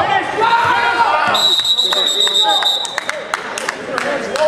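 Referee's whistle blown once, a steady high note lasting about a second and a half that starts just over a second in, stopping the wrestling action. Spectators shout and sharp knocks of feet and bodies on the mat are heard around it.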